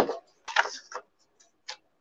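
A handful of short, sharp clicks and taps spread over about a second, following the tail of a spoken word.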